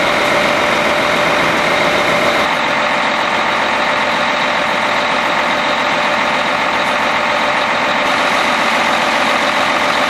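Caterpillar Challenger 95E track tractor running on a factory test rig: loud, steady engine and drivetrain noise. The tone shifts about two and a half seconds in.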